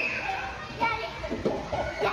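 Children playing and calling out: several short voice calls over a general hubbub of play.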